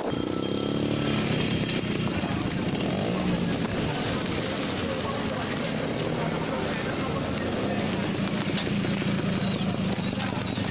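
Street traffic: a motor vehicle passes near the start, its engine note falling as it goes by, then steady engine noise carries on.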